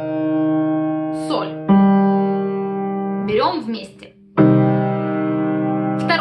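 Piano playing slow, held low notes of a left-hand chord built on C. A new note enters about two seconds in, the sound breaks off briefly, and the notes are struck again together near the end.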